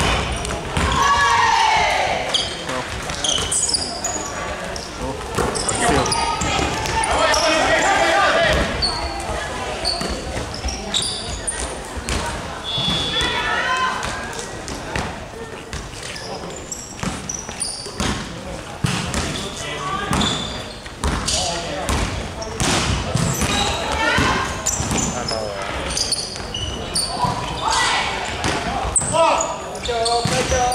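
A basketball bouncing and being dribbled on a hardwood court, in short sharp knocks throughout, with players' voices calling out, all echoing in a large sports hall.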